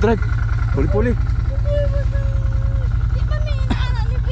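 Can-Am Commander side-by-side's V-twin engine idling with an even, low throb.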